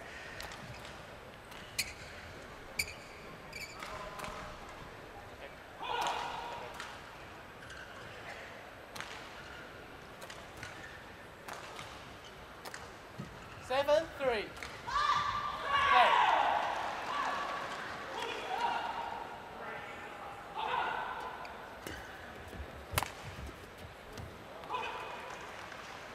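Badminton play in a large hall: scattered sharp racket hits on the shuttlecock at irregular intervals and squeaks of shoes on the court, with voices in the hall between them.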